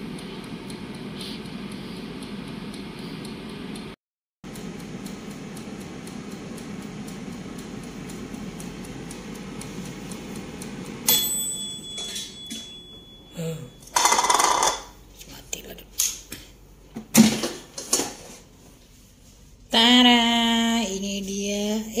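PerySmith PS1520 air fryer's fan running steadily, a low even whir. About halfway through it stops and a single bell-like ding rings out, the end of its timer, followed by several sharp knocks and clatter as the basket is handled.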